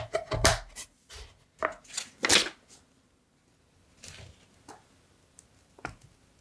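Hands lifting away a carved wooden fretwork panel. Several light wooden knocks and clicks with brief rubbing against paper come in the first two and a half seconds, then a few faint paper rustles and one more click near the end.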